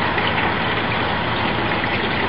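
Small barrel garden fountain running: a steady stream of water from its pump-style spout splashing into the basin, an even hiss with no breaks.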